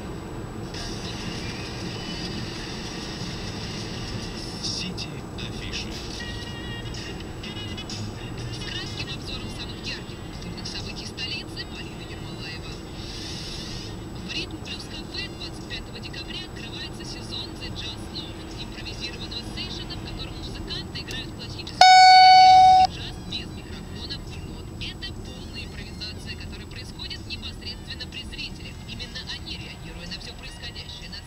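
Inside a moving car, road noise with a radio playing quietly. About 22 seconds in, a single loud electronic beep sounds: one steady tone held for about a second. This is the dashcam's speed-camera warning, sounding as the car reaches the camera it announced 300 m earlier.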